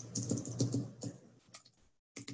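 Computer keyboard being typed on: a quick run of key clicks for about the first second, then a few scattered taps before it stops.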